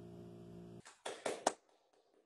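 A held chord on a digital piano dies away and cuts off abruptly just under a second in. It is followed by four quick hand claps.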